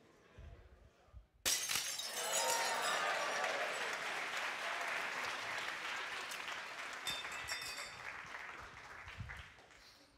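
A glass plate shattering about a second and a half in, struck by a heavy swinging pendulum ball. It is followed by several seconds of loud audience cheering and applause that fades near the end.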